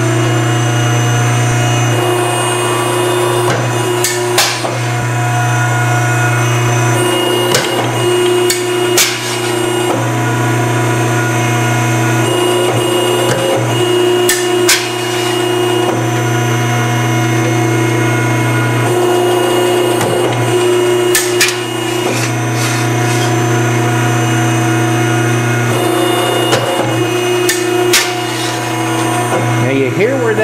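Edwards ironworker's hydraulic pump motor running with a loud, steady hum. About a dozen sharp knocks and snaps cut across it as the steel plate is set in place and the punch goes through the steel.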